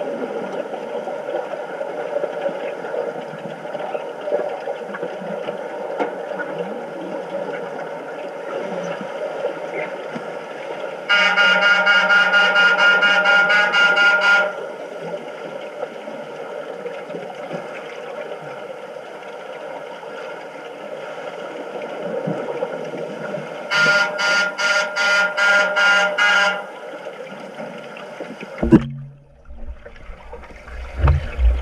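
Underwater signal horn heard through an underwater camera in a pool: one long blast about eleven seconds in, lasting some three seconds, then a quick run of about eight short blasts near the end. Underneath, a steady hiss of water and bubbles, and a sharp knock just before the end.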